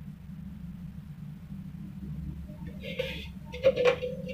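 Steady low hum in a kitchen as mustard oil is poured into an empty kadhai on a lit gas stove. A brief soft hiss comes about three seconds in, and a short knock just before the end.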